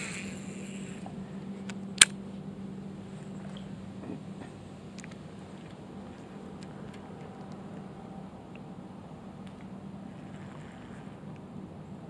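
A cast with a spinning or casting fishing rod: a short swish as the line goes out, then one sharp click from the reel about two seconds in. A steady low hum runs underneath through most of the rest.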